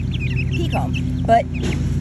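Six- to seven-week-old chicks peeping with a few short, high, falling peeps as they forage, over a steady low hum.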